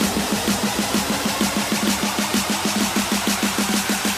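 Electronic dance music from a euro house DJ mix: a fast, even run of short repeated synth notes, about eight a second, with little bass underneath.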